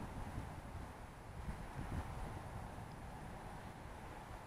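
Faint, low wind rumble on the microphone in the open air, with no jet or impact standing out.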